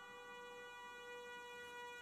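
Faint, steady drone of several held tones from an ambient background music bed, with no other sound.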